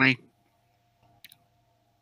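A single quick double click of a computer mouse button about a second in, over a faint steady hum.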